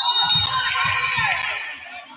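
Gym crowd cheering and shouting: many high voices at once, starting suddenly and fading away near the end, with low thumps beneath.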